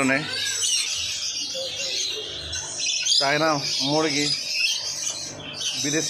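Many caged aviary birds chirping and squawking together in a dense, unbroken chatter, with a person's voice briefly heard about three seconds in.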